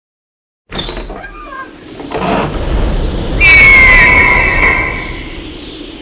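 A loud, high screech of a bird of prey, used as an intro sound effect, starting about three and a half seconds in with a slightly falling pitch and then fading away. It is preceded by a building rush of noise.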